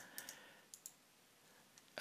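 A few faint computer mouse clicks in the first second, over near silence.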